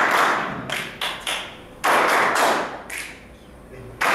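A small group clapping together on a count-in, in bursts that start sharply about every two seconds and fade away.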